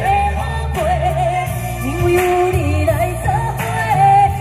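A woman sings a pop song into a handheld microphone over an amplified backing track with a steady bass line. Her voice carries a marked vibrato on the held notes.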